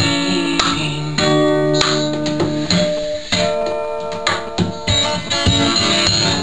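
Acoustic guitar strummed in a folk song's instrumental passage, its chords ringing between irregular strokes.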